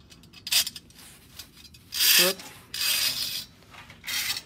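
Thin steel wire rope being pulled through a channel lock on a metal strut rail: a few short scraping rubs, the longest about three-quarters of the way through.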